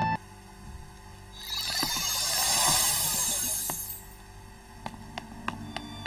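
Background music cuts off abruptly, then a shimmering, glittery sound effect swells and fades over about two and a half seconds, followed by a few faint light clicks.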